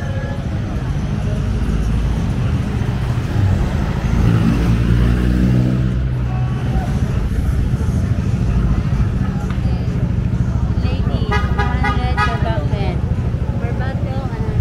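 Street traffic: car and motorcycle engines running and passing close by, with a vehicle horn tooting.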